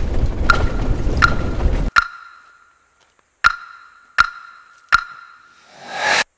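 Vehicle rumble while driving a muddy dirt track, heard from inside the cabin, cuts off abruptly about two seconds in. Over it and then alone, a ringing metallic ping sound effect strikes six times at uneven spacing, each ring dying away.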